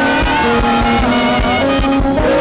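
Upbeat church band music: held melody notes over a steady drum beat about four times a second.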